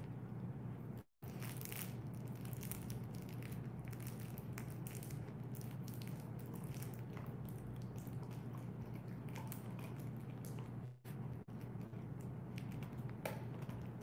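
Bernese mountain dog gnawing and chewing on a toy, giving irregular clicks and crunches over a steady low hum. The sound cuts out for a moment about a second in and again near the end.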